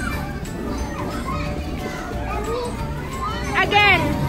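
Children's voices and shouts in a busy indoor play area, over background music. A loud, high-pitched child's squeal comes near the end.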